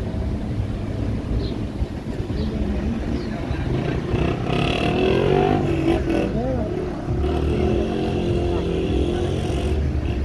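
A car driving slowly, its engine and road noise heard as a steady rumble from inside the cabin. Voices of people at the roadside come through from about four seconds in and are loudest around the middle.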